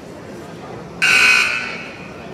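Gym scoreboard horn sounding once about a second in, a harsh buzz of about half a second that rings on in the hall before it dies away, the signal that a timeout is over.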